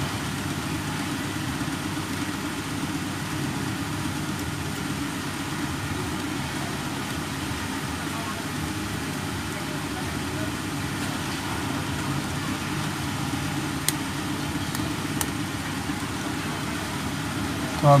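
Steady low mechanical hum, with two faint sharp clicks about a second apart near the end.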